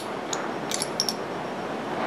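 A few light metal clicks in the first second as the barrel of a Ruger LCP pistol is worked out of its slide by hand during field-stripping.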